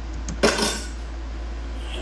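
A single sharp clatter about half a second in, a hard object knocking on dishes or utensils, with a short rattle after it. A low steady hum runs underneath.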